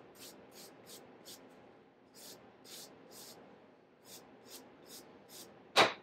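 Brisk rubbing strokes on a paperback book's cover, about three a second in short runs with brief pauses, as the cover is wiped clean. Near the end comes one sharp knock, the loudest sound.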